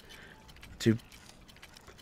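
Faint, light metallic clinking in the background, with one short spoken word just before a second in.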